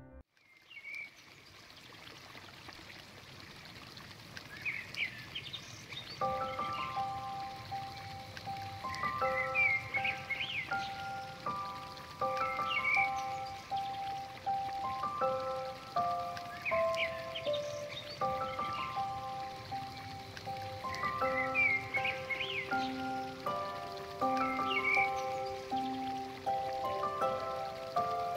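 Relaxing background music over a nature-sound bed: a steady rushing like rain or running water, with small birds chirping again and again. About six seconds in, a slow melody of long held notes begins over it.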